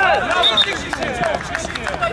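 Several men's voices shouting and calling out over one another on the pitch, with scattered short knocks.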